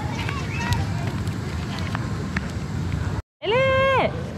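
Steady low outdoor rumble with faint voices and a few light clicks. Near the end the sound cuts out for a moment, then a high voice holds a loud, drawn-out 'nooo' on one steady pitch for about half a second.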